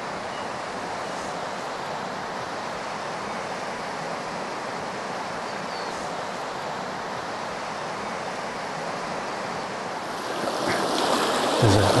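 Steady rushing of a rocky river flowing over stones, growing louder near the end.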